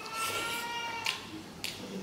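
A domestic cat meowing once, a drawn-out call of about a second that rises slightly and then slowly falls, followed by a few short wet mouth clicks from chewing.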